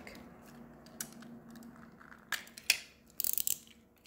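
Adhesive tape being applied by hand to card stock: a quiet first couple of seconds, then a few sharp clicks and short crisp rasps, the sharpest click a little before three seconds in.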